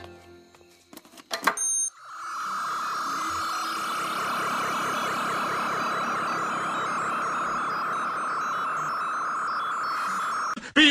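A single high-pitched sung note held steady with a slight waver for about eight seconds, starting about two seconds in after a quiet opening.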